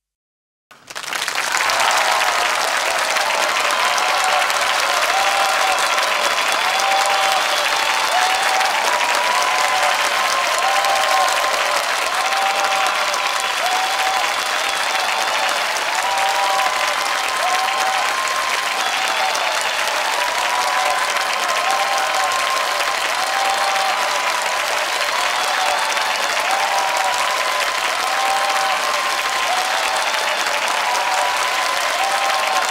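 Steady audience applause that starts abruptly about a second in after silence, just after a song performance ends.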